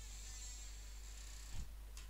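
Faint room tone from the recording: a steady low electrical hum under a thin high hiss, with one soft brief thump about a second and a half in.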